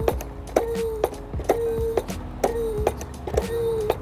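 Hand-lever hydraulic test pump being worked at about one stroke a second, forcing water into an expansion vessel at 10 to 15 bar. Each stroke gives a click followed by a short, steady squeak.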